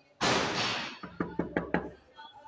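A quick run of about five knocks on a room door, preceded by a sudden burst of rushing noise.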